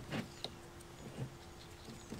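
A few light plastic clicks and knocks from a foam cannon bottle being handled, over a faint steady hum.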